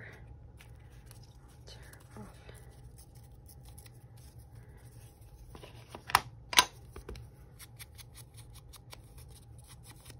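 Two sharp plastic clicks about six seconds in, half a second apart, as a square stamp ink pad's case is opened. Between them a low steady hum and faint small noises.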